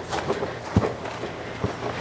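A person's footsteps: about three steps spread over two seconds.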